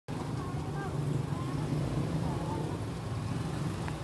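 Steady low rumble of street traffic with faint voices chattering, and a single light click near the end.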